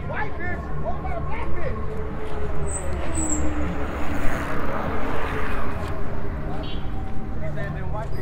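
Busy outdoor boardwalk ambience: voices of passers-by over a steady low rumble, with a passing vehicle that rises and fades around the middle.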